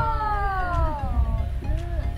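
A woman calling a long, drawn-out 'nice shot!' after a golf drive, the high call falling slowly in pitch and fading out a little over a second in.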